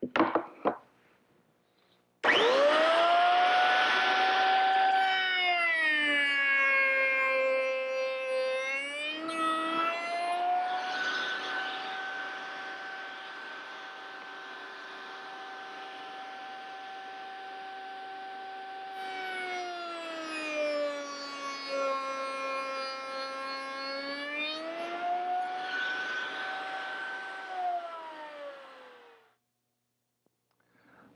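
Table-mounted router with a rail-and-stile cope cutter, switched on about two seconds in and running with a high steady whine. Its pitch sags twice and recovers as the bit is loaded by two cope cuts across board ends. It winds down with a falling pitch near the end.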